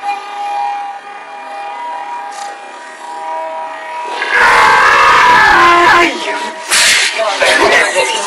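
Men's voices. About four seconds in there are two seconds of loud, distorted shouting as one man jumps onto another's back, then a short sharp crack, and talk resumes.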